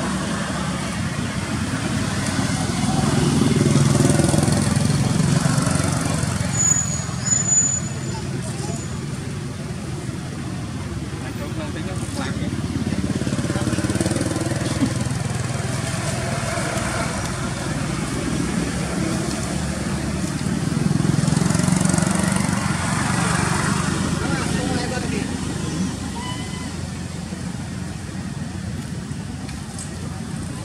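Passing road traffic: vehicles go by, swelling loudest about four seconds in and again a little past twenty seconds.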